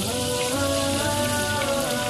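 Chapli kebabs sizzling as they shallow-fry in oil in a frying pan, a steady crackling hiss, under background music with a melody.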